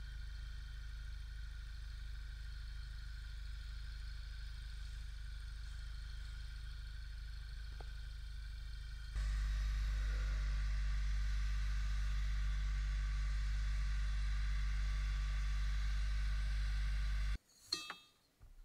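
A small motorised appliance running steadily with a low hum and a whine. It steps up to a louder setting about nine seconds in, then cuts off abruptly shortly before the end.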